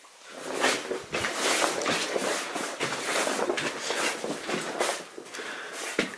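Footsteps crunching and scuffing over a loose rock and gravel mine floor, a dense irregular run of steps that tails off near the end.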